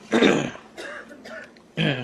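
A person clears the throat with one short, sharp cough about a tenth of a second in.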